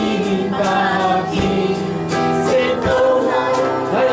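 Worship song playing: several voices singing over instrumental accompaniment with a regular beat about every one and a half seconds.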